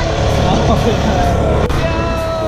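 A young girl's high voice calling out over the steady low rumble of a moving open-top buggy, with wind on the microphone.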